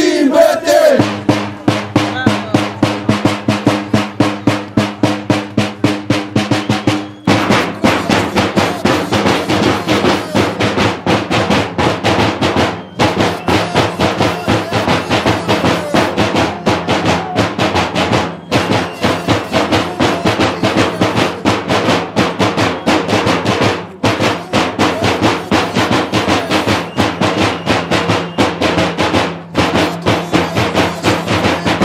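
Drums of a Romanian bear-dance troupe beaten in a fast, steady rhythm, with a steady low tone held under the beat that shifts pitch about seven seconds in.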